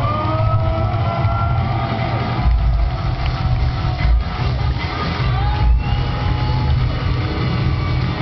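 Electronic hip-hop played live through a concert PA: a heavy bass line with deep drum thuds and synth tones gliding over it.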